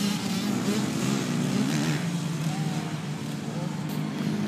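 Motocross dirt bikes running on a dirt track, engine pitch wavering up and down as the riders work the throttle.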